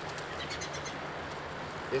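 Faint crinkling of a small plastic zip-top bag being pulled open by hand, over a steady background hiss.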